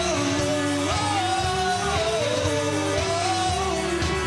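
Indie pop band playing live: drums, electric guitars and keyboard, with a gliding melody line over a steady beat.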